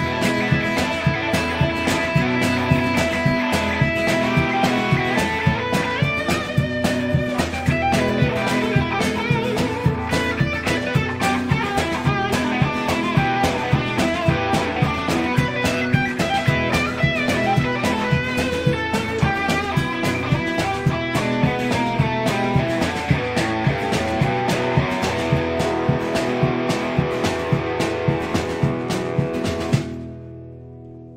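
A three-piece country-rock band playing live: electric and acoustic guitars over a steady drum beat, with no singing. The playing stops at the very end.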